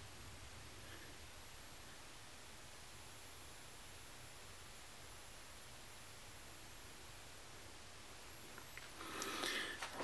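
Quiet room tone: a faint steady low hum and hiss. Near the end there is soft handling rustle as the phone is picked up.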